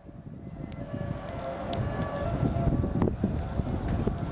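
Wind buffeting an outdoor microphone, a gusty rumble that grows louder, with a faint steady higher tone behind it for a second or two and a couple of light clicks.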